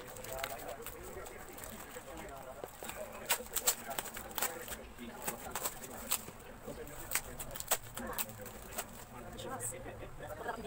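A parcel's wrapping being torn open by hand, with sharp crackles and rips scattered throughout, thickest around the middle.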